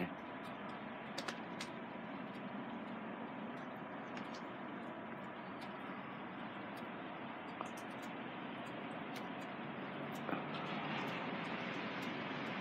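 Steady outdoor urban background hiss, with a few faint clicks of the phone being handled; the hiss grows a little louder near the end.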